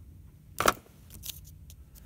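A sharp click about half a second in, then a few fainter ticks, over a low steady hum: small handling noise.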